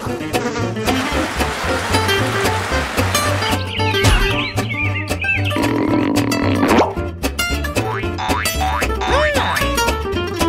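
Upbeat cartoon background music with a steady bass line, overlaid with cartoon sound effects that slide up and down in pitch, including springy boings.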